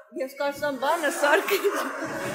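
A person's voice making short chuckling sounds with no clear words, the pitch bending up and down.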